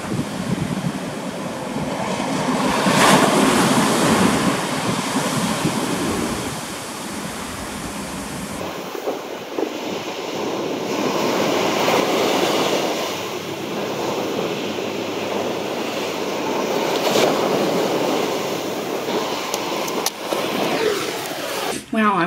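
Sea waves breaking and washing up a pebble beach, the surf swelling and falling back in long surges every several seconds.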